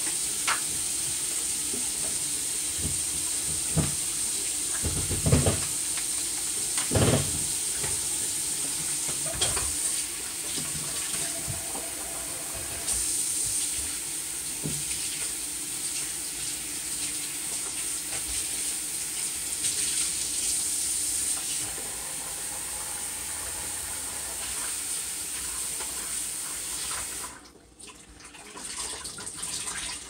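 Kitchen tap running into a steel sink with a steady rush while things are washed under it, with a few sharp knocks in the first ten seconds. The running water cuts off near the end.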